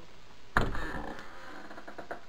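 A hinged door pushed shut with a sudden thud about half a second in, the noise fading away over about a second.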